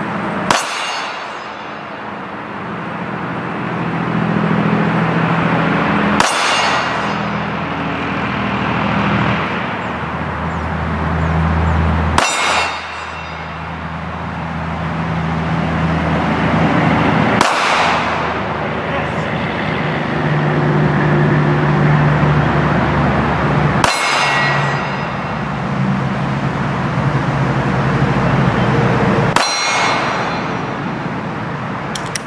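Six single 9mm shots from a Glock 19X pistol, about six seconds apart, one shot per draw from the holster. Each shot is followed at once by the ringing clang of a hit on a steel target about 15 yards off.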